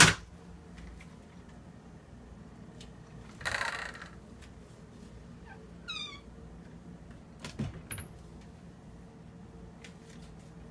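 Louvered closet doors being opened: a sharp latch click at the start, a brief scrape a few seconds in, a short run of falling squeaks from the doors about six seconds in, then a couple of knocks near the end.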